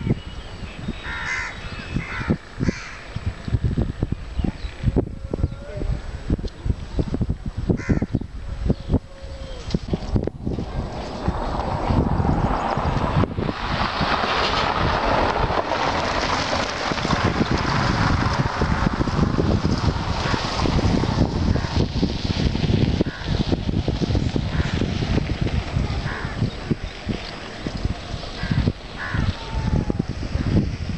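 Outdoor ambience dominated by wind buffeting the microphone in gusts, with a few short bird calls in the first seconds. About twelve seconds in, a louder, steady rushing noise takes over for roughly ten seconds before easing.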